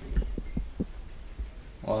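Irregular low thumps and a few light clicks: handling noise from a handheld camera being swung around.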